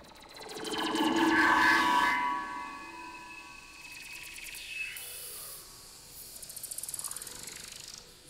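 Live experimental ensemble music from electronics and percussion. A cluster of sustained tones with a fast clicking texture swells and fades over the first two seconds, and quieter rapid ticking pulses follow near the end.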